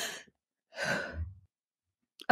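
A brief laugh trails off, then a woman gives one breathy sigh lasting under a second.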